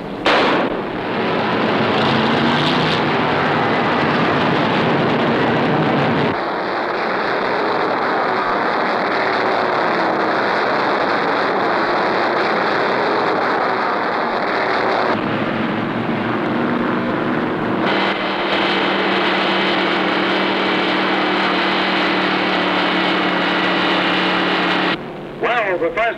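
Massed V8 engines of a field of 1959 NASCAR stock cars at full throttle as the race gets under way from the green flag, a dense, continuous engine noise. The sound changes abruptly about 6, 15, 18 and 25 seconds in, and from about 15 seconds a steady low engine drone stands out.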